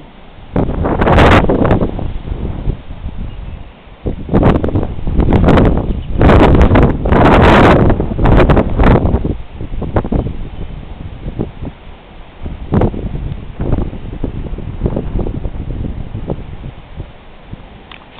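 Strong, gusty wind from an approaching thunderstorm buffeting the microphone in loud irregular surges, loudest about six to eight seconds in, with tree leaves rustling in the gusts.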